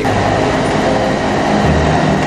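A train running, heard as a loud, steady rumble and rattle of the moving carriage.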